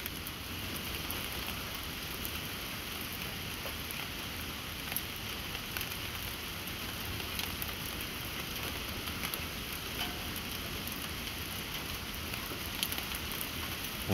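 Steady background hiss with faint scattered ticks.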